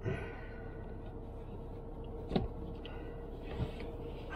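Soft knocks and rustling as a man shifts his body about in a car's driver seat: one knock right at the start, a louder one past the middle and a smaller one near the end, over a faint steady hum.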